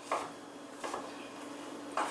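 Chef's knife striking a wooden cutting board twice, about a second apart, while dicing cooked turkey breast.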